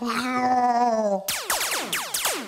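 The closing stretch of a comedic theme song: a held, wavering note with a rich, slightly nasal tone sags gently in pitch for about a second, then a cluster of fast downward-sweeping tones takes over.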